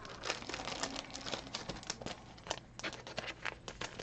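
Faint crinkling and clicking of plastic card packaging being handled, a quick run of small rustles and ticks.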